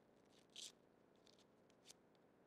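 Faint crackling and snapping of a fortune cookie being broken open in the hands. A few short crackles, the loudest about half a second in.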